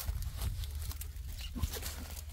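Handling noise from a phone held close over onion plants: a steady low rumble with scattered short rustles and clicks.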